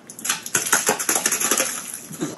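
Debris pouring out of a fallen pipe and scattering over paving slabs: a dense run of quick clattering ticks and small impacts that starts a moment in and keeps going.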